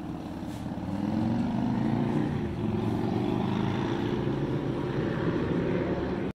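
Propeller aircraft droning: a steady low hum that grows louder over the first second, then holds.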